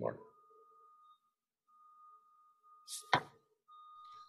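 Near silence, broken about three seconds in by a brief rustle and one sharp knock.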